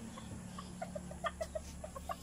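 Malaysian Serama bantam chickens clucking: a quick, uneven run of short, soft clucks in the second half.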